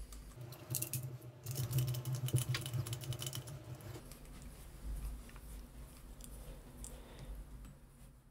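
Small metallic clicks and rattles of a KF flange clamp being closed and its wing nut tightened around a glass flange and a steel flange, thickest in the first half and thinning out later. A low steady hum runs under the first four seconds.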